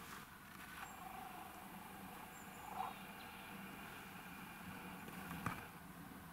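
Quiet winter forest ambience: a faint steady hiss with a few soft sounds, and one short sharp click about five and a half seconds in.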